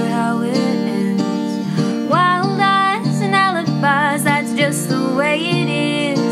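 A woman singing a folk/Americana song, accompanying herself on a strummed acoustic guitar.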